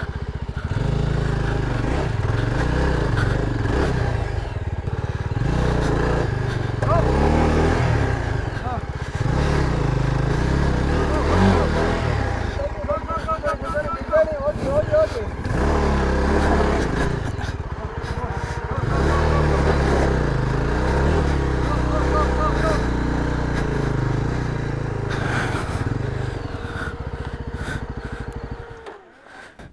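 Single-cylinder adventure motorcycle engine running on a rough trail, its note rising and falling with the throttle, with people's voices talking over it at times.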